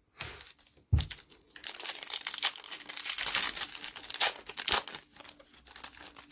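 A foil trading-card pack wrapper being torn open and crinkled by hand, a long run of crackling with a single knock about a second in.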